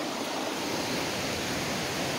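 A river rushing over rapids, a steady even wash of water noise.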